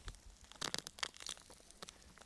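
Soil and roots crackling and tearing as a bulbous leek (oerprei) is pulled out of the ground by hand: faint, irregular snaps and crackles.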